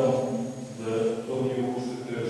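A man speaking, with drawn-out, held syllables.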